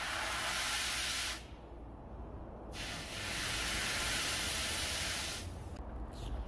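Red-hot forged steel knife blade being quenched, hissing in two long bursts with a short pause between as the blade is dipped into the quench liquid.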